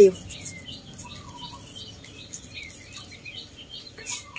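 Small birds chirping, many short high chirps repeating and overlapping, with one lower wavering note about a second in.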